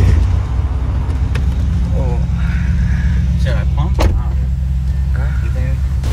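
Shelby GT500's supercharged V8 idling with a steady low rumble, heard from inside the cabin. There is a sharp click about four seconds in.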